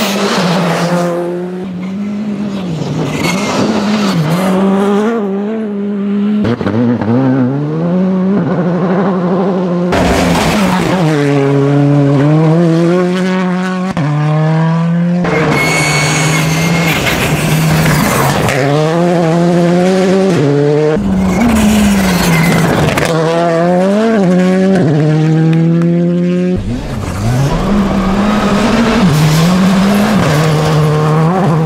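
Škoda Fabia rally cars at full effort on a gravel stage, engines revving up again and again as they change gear, over the hiss of loose gravel thrown by the tyres. Several passes follow one another, each breaking off abruptly about every five seconds.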